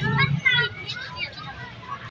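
Children's voices talking and calling, words not made out.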